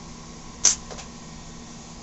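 Low, steady room hum with one short, sharp, hissy noise about two-thirds of a second in.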